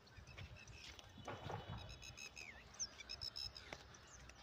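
Faint outdoor bird calls: a few short, high chirps and a falling whistle around the middle, over the soft rustle of footsteps on soil.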